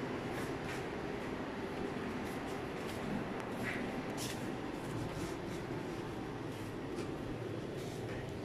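Steady air-conditioning rumble with a few faint scattered clicks.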